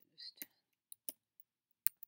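Computer keyboard being typed on: about five separate, unevenly spaced keystroke clicks.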